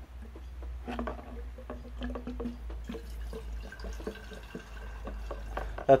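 Petrol being poured into a glass jar, a continuous trickling splash with pitched ringing building up in the second half as the jar fills.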